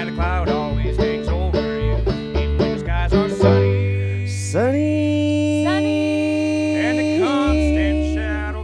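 Live acoustic country trio playing: acoustic guitar, upright bass and fast-picked plucked strings in quick notes. About three and a half seconds in they land on a held chord with a long low bass note, and sung harmony notes slide in a second later and hold.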